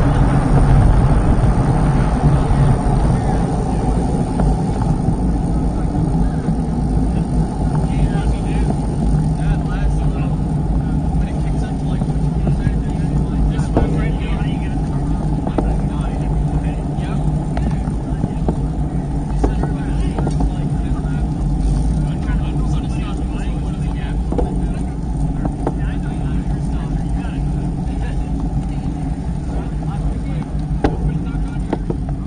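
Steady rush of wind across the microphone of a bike-mounted action camera while riding a road bike at speed, mixed with tyre and road noise.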